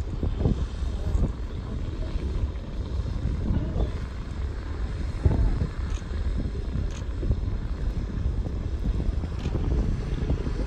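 Wind buffeting the microphone over the low, steady rumble of a cruise boat's engine on a lake.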